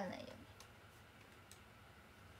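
A woman's voice ends a sentence, then faint room tone with two soft, short clicks about half a second and a second and a half in.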